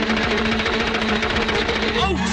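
Cartoon sound effect of an insect swarm buzzing: a dense, steady, rapid buzz over orchestral music.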